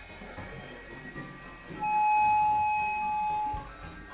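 Experimental electronic synthesizer music: a low droning hum under scattered held tones, with one loud, steady high synth tone that enters about two seconds in and holds for nearly two seconds before cutting off.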